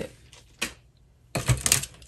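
Sharp clicks of long acrylic nails and hands on a hard tabletop: a single click about half a second in, then a quick cluster of clicks with a thump about a second and a half in.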